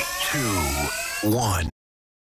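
Audio track playing from a phone media player: repeated downward-sliding pitched sounds, about two a second, over steadily rising tones. It stops abruptly near the end, leaving dead silence as playback is switched.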